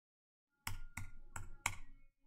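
Four keystrokes on a computer keyboard, evenly spaced about a third of a second apart, starting a little over half a second in: digits of a zip code being typed.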